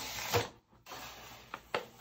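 Kraft-paper-wrapped package being handled and set down: paper rustling with a few light knocks, one about a third of a second in and two near the end. The sound drops out briefly just after the first knock.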